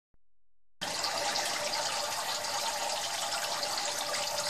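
Steady splashing of water from a Turtle Clean 511 canister filter's spray bar falling onto the surface of a turtle tank. It starts abruptly just under a second in.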